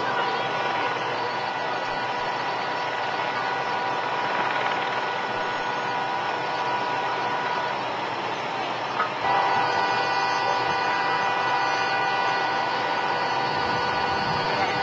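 A motor runs steadily, a constant whine over a noisy hum. A little past halfway the whine drops out for about a second and a half, then comes back with a short click.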